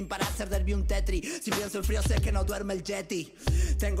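Hip hop track playing: a male rapper rapping in Spanish over a beat with deep bass notes.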